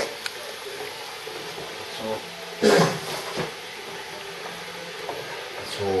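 Tomato soup cooking in an aluminium saucepan on a gas hob, with a faint steady hiss. A short, loud vocal sound comes about two and a half seconds in.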